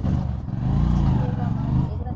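Low rumble of a motor vehicle's engine, swelling about half a second in and easing near the end.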